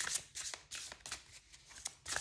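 A deck of large oracle cards being shuffled by hand, cards passed from one hand to the other in a quick, irregular run of soft slaps and swishes, a few each second.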